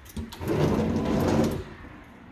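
Sliding closet door rolling along its track for about a second as it is pushed across the opening, a rough rumbling scrape.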